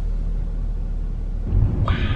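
Low, steady rumble of a car heard from inside the cabin, growing louder with a hiss about one and a half seconds in.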